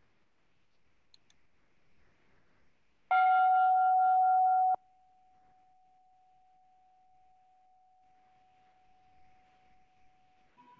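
A bell struck once about three seconds in, marking the end of a minute of silent prayer. Its loud ring, with several overtones, cuts off sharply after under two seconds, leaving a faint steady tone at the same pitch.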